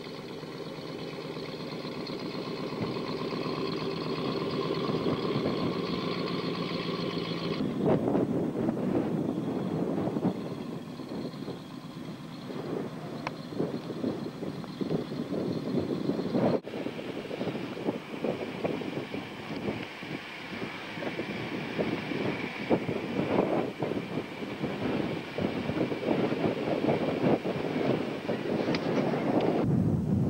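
Range Rover engine running in deep snow, steady and slowly growing louder. About eight seconds in it gives way to a rougher, noisier rush with the engine still faintly audible.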